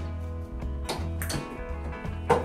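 Background music with a steady bass line and held chords, with a couple of light knocks about a second in.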